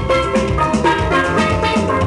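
Steelpan played live: a pair of steel pans struck with mallets in a quick run of ringing notes over a steady bass and drum beat.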